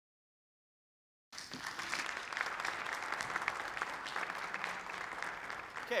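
Audience applauding, cutting in suddenly out of silence about a second in and going on as steady clapping.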